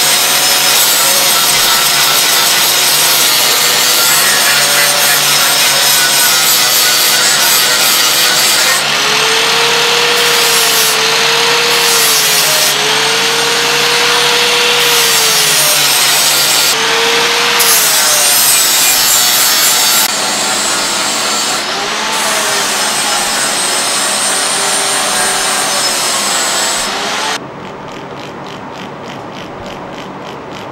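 Power grinder working the steel of a railroad-spike knife blade, the motor's pitch dipping and recovering as the blade is pressed on. A few seconds before the end it gives way to a quieter, evenly repeating mechanical clicking.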